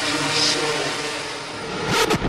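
Electronic dance music breakdown: the beat has dropped out, leaving sustained synth tones over a rushing noise sweep that swells in level toward the end, building up before the beat returns.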